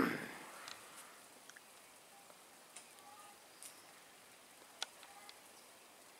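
A man's cough dying away right at the start, then quiet outdoor ambience with a low hiss, a few faint sharp clicks and brief faint chirps.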